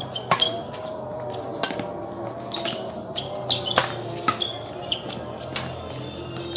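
Badminton rackets striking a shuttlecock in a fast doubles rally: sharp cracks about once a second, the hardest pair a little before four seconds in, over steady chirping of night insects.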